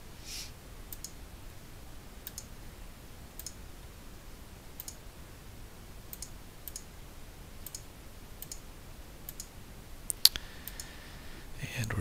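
Quiet, scattered single clicks of a computer mouse, roughly one a second, with one louder click about ten seconds in.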